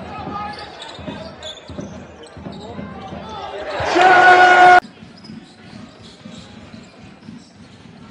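A basketball dribbled on a hardwood court with sneaker and court noise. About four seconds in a loud, steady arena buzzer sounds over rising crowd noise, then cuts off abruptly less than a second later.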